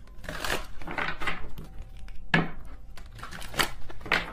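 A tarot deck being shuffled by hand: a rustle of cards sliding against each other, then two sharp taps of cards on the table.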